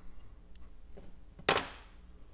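Fly-tying scissors: a few faint handling ticks, then one sharp click about one and a half seconds in.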